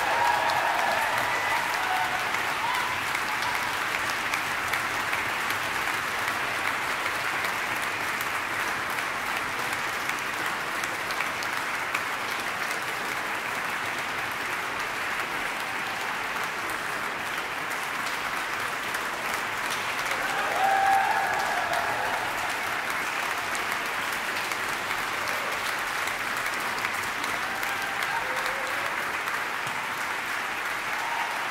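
Concert hall audience applauding steadily at the end of a piano concerto performance, with a voice or two calling out over the clapping, loudest about two-thirds of the way through.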